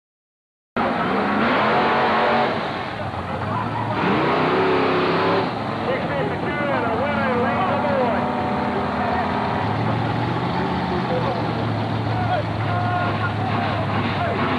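Drag race car engines revving and running at the strip, their pitch rising and falling. The sound cuts in about a second in.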